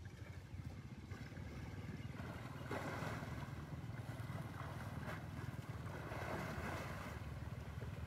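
Wind rumbling on the microphone over water sloshing as a swimming elephant moves through the river; the sloshing grows louder about three seconds in.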